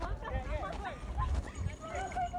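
People's voices calling out in short, pitch-gliding exclamations with no clear words, over an uneven low noise.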